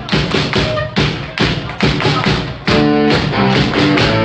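Live rock band on a loud club PA playing a break of short, separate accented hits with gaps between them, then the full band comes back in about three seconds in.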